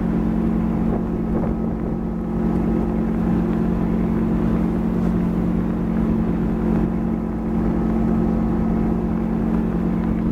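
Tow boat's engine running at a constant towing speed, a steady drone, over the rush of water and wind.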